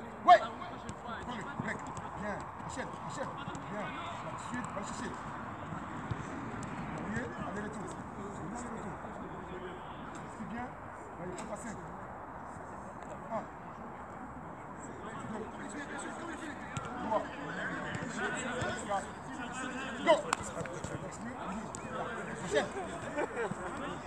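Football being kicked on an artificial pitch: a sharp thud just after the start and another about twenty seconds in, with a few softer ball touches between, over background voices.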